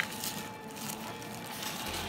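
Light handling noise from fingers working among the wiring behind the e-scooter's charging port: a sharp click at the start, then faint rustles and small ticks.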